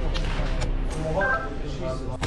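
A person's voice heard briefly over a steady rumble and hiss.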